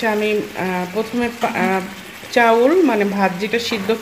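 A voice with long held and gliding notes, over the soft sizzle and scraping of a spatula stirring a simmering shrimp curry in a frying pan.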